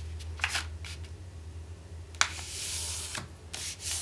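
A sheet of letter-size paper being folded to the centre and creased by hand. There are a few brief rustles, a sharp crackle a little past halfway, then about a second of steady rubbing as fingers slide along the fold.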